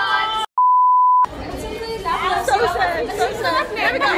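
A steady, high edited-in beep tone, about three-quarters of a second long, comes in about half a second in just after the sound cuts off abruptly. It is followed by several women talking and exclaiming over one another.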